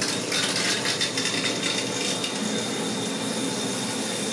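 Shower water running with a steady hiss, under a thin steady high whine from the A4988-driven stepper motor pulling the GT2 timing belt that turns the shower valve; the whine starts about a quarter second in.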